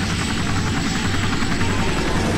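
Light turbine helicopter flying close by, its rotor chopping rapidly and evenly, with a thin high whine over it. The film song's music carries on underneath.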